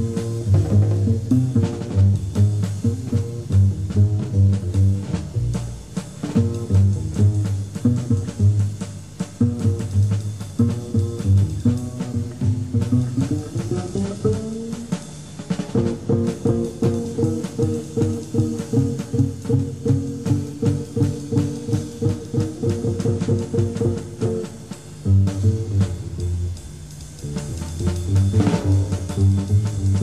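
Jazz trio of guitar, double bass and drum kit playing, with the drums busy throughout.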